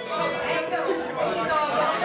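Audience chatter in the room, several voices talking over each other, with a steady held note sounding underneath.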